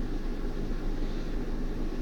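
Steady low hum with faint background hiss; no distinct event.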